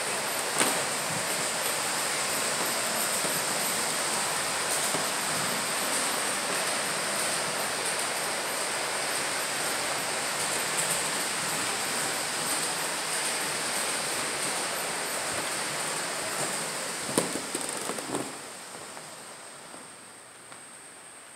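A steady rushing noise with a faint high whine running through it, a couple of light knocks near the end, then dropping away sharply.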